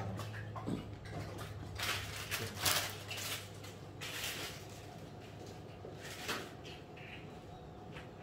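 A few short rustling, brushing noises over a steady low hum: close handling and clothing noise.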